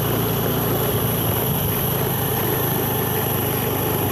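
Motorcycle engine running at a steady speed while riding, a low even hum with no change in pace.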